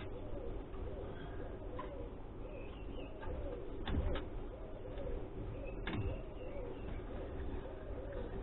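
A pigeon cooing over and over in the background, with a few knocks and clatters of scrap wood being handled, the loudest about four and six seconds in.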